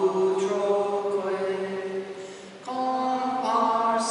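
Slow unaccompanied sung chant in long held notes, with a short break between phrases about two and a half seconds in before the next note begins.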